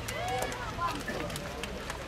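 Footballers calling and shouting to one another on the pitch during play, short separate calls, with a few sharp knocks in between.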